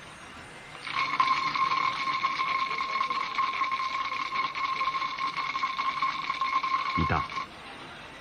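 Electric buzzer ringing continuously for about six and a half seconds: one steady high tone over a fast rattle. It starts about a second in and cuts off abruptly near the end.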